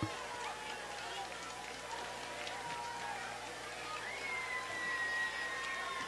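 Faint open-air stadium crowd ambience: distant voices and chatter, with a thin held tone in the second half.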